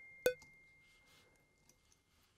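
Software metronome click of the LUNA recording system at 130 BPM: one last short pitched beep about a quarter second in, then the clicks stop as playback is stopped. A faint steady high tone fades out underneath.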